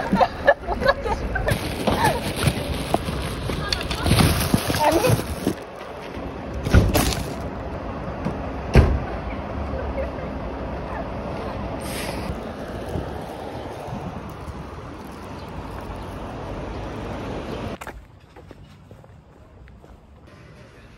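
A heavy car trunk lid being handled and pushed shut: rustling and several knocks, then a single loud thud about nine seconds in as it closes, with voices in the background.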